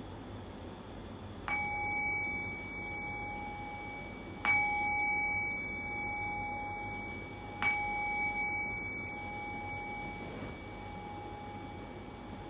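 A meditation bell is struck three times, about three seconds apart. Each strike rings on with a clear two-note tone that fades slowly. The strikes mark the close of the guided meditation.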